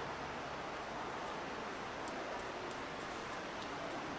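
A steady, even hiss of background noise, with a few faint ticks.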